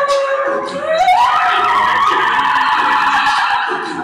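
A loud, held vocal sound into a microphone. About a second in it slides up in pitch and turns harsh and rough, distorted by the phone recording, over a live-looped vocal backing.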